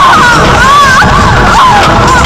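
A loud din of many overlapping high voices calling out and laughing at once, their pitches sliding up and down, over a steady low rumble.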